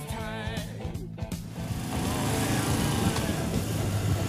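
Background music with guitar and singing fades out about a second and a half in, giving way to a Moto Guzzi V85TT's V-twin engine running on the move with wind noise, growing louder toward the end.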